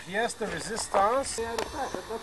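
People talking; the words are not made out.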